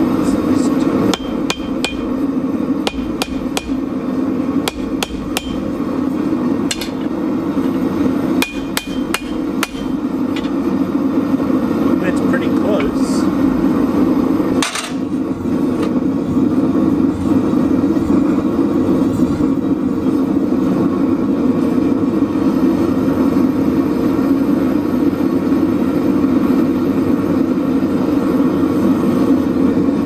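Hand hammer striking red-hot steel on an anvil: a run of ringing blows, roughly two or three a second, through the first ten seconds, then one heavier blow about halfway. Under it the propane gas forge's burner roars steadily throughout.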